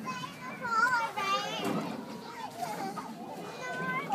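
Young children's high-pitched voices, with short calls and chatter over a background murmur of other people.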